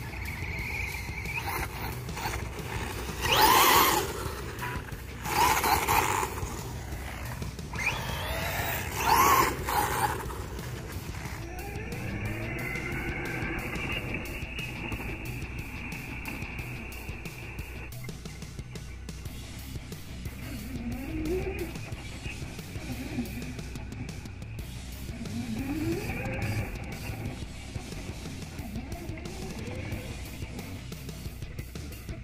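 Background music over a Redcat Camo X4 electric RC buggy running on a 3S battery, its brushless motor whining and rising in pitch as it accelerates. There are several short, loud bursts in the first ten seconds.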